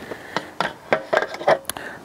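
Metal legs and fittings of a folding camping table clicking and knocking as they are folded and handled: a run of light, irregular metal clicks.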